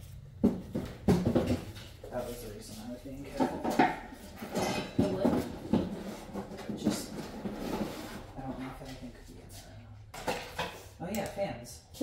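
Boxes and belongings being handled and set down: scattered knocks and clatters, with low, indistinct voices in between.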